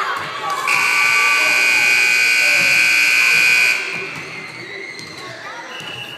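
Gym scoreboard buzzer sounding one steady, harsh tone for about three seconds, starting just under a second in, over shouting spectators. It is the horn ending the game.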